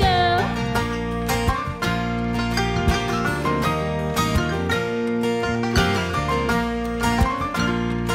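A live country band plays an instrumental passage with banjo picking over acoustic guitar, bass and keyboard. A held sung note trails off just at the start.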